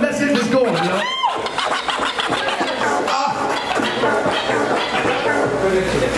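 Hip-hop music over a PA with DJ scratching on turntables, and voices shouting over it; a sharp swooping pitch glide about a second in.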